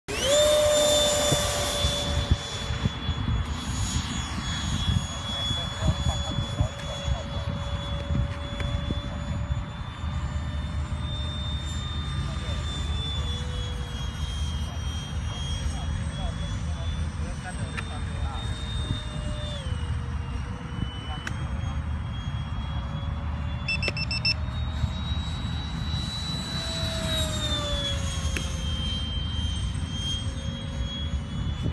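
Freewing F-18 radio-control jet's electric ducted fans whining: the pitch climbs sharply in the first second and is loudest for the first two seconds as it powers up. It then holds a high whine as it flies, shifting in pitch with throttle, with a falling sweep near the end as it passes.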